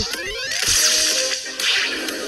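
Video game music with cartoon sound effects: a rising pitch glide right at the start, then two swishing whooshes.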